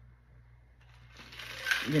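Ice rattling and sliding inside a metal cocktail shaker as it is tipped up to drink. The rattle starts about a second in and builds toward the end.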